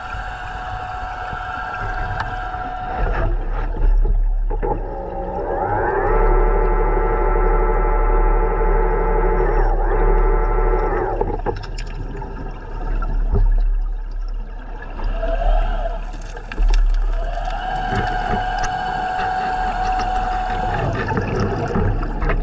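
Electric motor of a diver propulsion vehicle (underwater scooter) whining underwater over a low rumble. A steady whine near the start, then one that rises in pitch as the motor spins up about six seconds in, holds for about five seconds and stops, and another steady stretch near the end.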